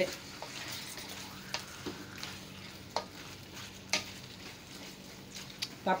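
Wooden spatula stirring chicken pieces in a stainless steel wok, with several sharp scrapes and knocks against the metal over a faint steady sizzle of the meat frying in oil.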